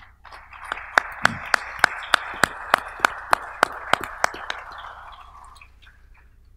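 Audience applauding, with loud single claps standing out at an even pace of about three a second; the applause dies away near the end.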